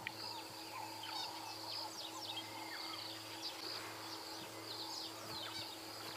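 Bush ambience: many short, quick bird chirps scattered throughout over a steady high insect drone, with a faint steady low hum underneath.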